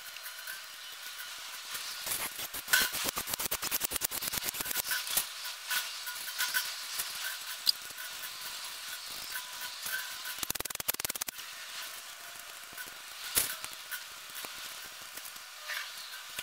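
Bolts and tools making quick, irregular small metallic clicks and clinks as bolts are set into the camshaft carrier and run into the aluminium cylinder head. The sound is thin, with little bass.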